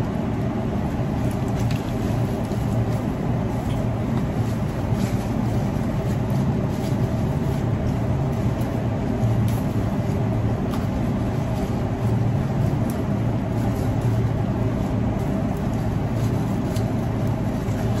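Steady low background rumble, with scattered faint ticks and rustles as flower stems and leaves are handled.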